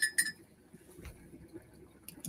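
Two quick clinks of glass, about a fifth of a second apart, each ringing briefly, at the very start.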